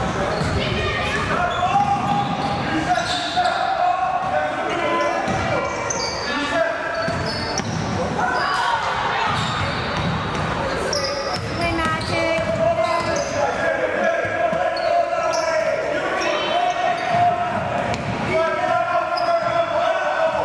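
Basketball game in a gymnasium: a ball bouncing on the hardwood court amid indistinct voices of players and spectators, echoing in the large hall.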